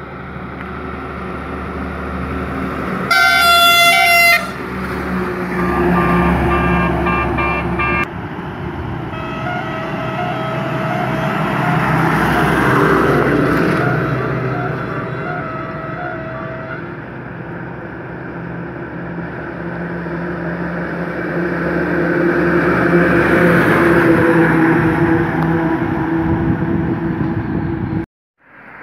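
Trucks driving past on a road, their engines and tyres rumbling, louder as one passes close near the middle and another near the end. A loud truck horn blasts for about a second about three seconds in. It is followed by a run of short, evenly spaced horn notes, then a long patterned horn tone lasting several seconds.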